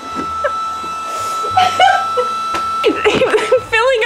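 People's voices in a small room, wordless vocal sounds and talk, with a wavering, sing-song voice near the end. A faint steady high tone hums underneath.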